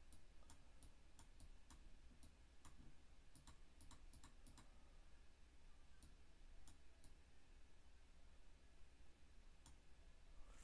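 Faint, irregular computer mouse clicks, a quick run of them in the first half and a few scattered ones later, over a low steady hum.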